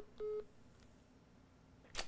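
Phone speakerphone call-ended beeps: the last of a run of short, identical tones about a quarter of a second in, signalling that the call has been hung up. A short sharp click follows near the end.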